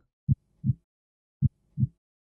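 Heartbeat sound effect: two double thumps, low and dull, about a second apart.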